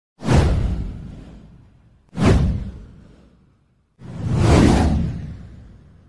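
Three whoosh sound effects of a title-card animation, about two seconds apart, each fading out over a second or more; the first two start suddenly, the third swells in more gradually.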